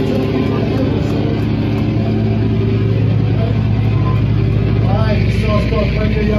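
Live punk band playing loud: a sustained, heavily distorted guitar and bass drone, with a vocalist yelling over it near the end.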